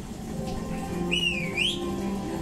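Soundtrack music from a projected table animation, with a whistle sound effect about a second in that dips in pitch and then swoops up.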